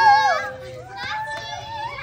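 Young children's excited voices: a loud, high-pitched shout right at the start, then quieter chatter and calls.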